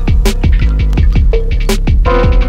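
Instrumental rap beat: a heavy bass kick that falls in pitch on each hit, about four a second, under sharp hi-hat and snare hits and a steady low bass.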